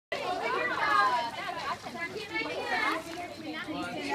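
Children's voices talking and calling out over one another.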